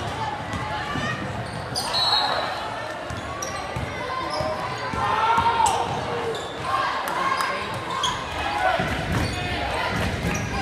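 Basketball game sounds in a gym: a ball bouncing on the hardwood floor amid short sharp knocks and squeaks, under indistinct voices of players and spectators.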